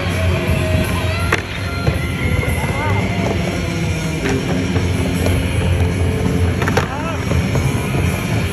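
Skateboard wheels rolling on a wooden vert ramp, with a couple of sharp clacks of the board against the ramp or coping, over steady music from the arena's sound system.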